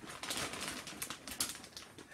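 Large plastic bag of salted popcorn crinkling and rustling as a hand digs in and lifts it, a quick irregular run of sharp crackles.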